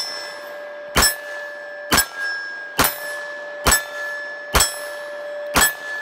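A CZ-75 BD Police 9mm semi-automatic pistol firing a string of shots at a steady pace of about one a second: one as the sound opens, then six more. A steady ringing tone carries on between the shots.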